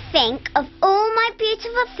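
A high, childlike cartoon voice singing short sing-song phrases.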